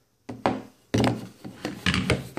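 Handling noise from a plastic oil catch can: rubbing and several sharp knocks, beginning about a third of a second in.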